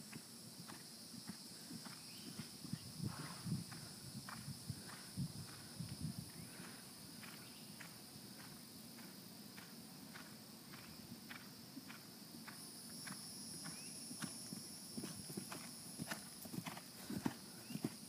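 Faint hoofbeats of a horse cantering on grass turf, coming in irregular groups of soft thuds and growing more frequent near the end as the horse nears.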